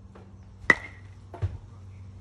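A baseball bat hitting a ball off a batting tee: one sharp crack with a brief ringing ping. A second, duller thump follows about three-quarters of a second later.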